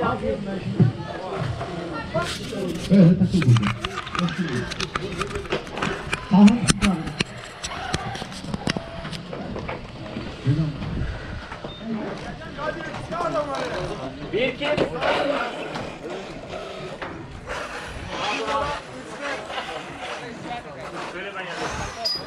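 Indistinct voices of several people talking, with music playing in the background.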